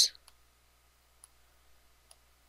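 Computer mouse clicking twice, faintly, about a second apart, over quiet room tone.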